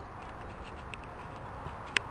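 A horse cantering on grass, its hoofbeats faint under a steady outdoor hiss, with a few sharp clicks and a loud click just before the end.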